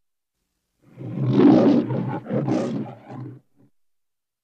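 Metro-Goldwyn-Mayer logo lion roar: a lion roaring twice in quick succession, starting about a second in and over by about three and a half seconds.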